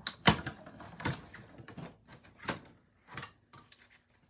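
Hand-cranked die-cutting and embossing machine being turned, feeding a sandwich of acrylic cutting plates and dies through its rollers to cut cardstock in one pass. A few irregular knocks and clicks, the loudest just after the start, with quieter scraping between.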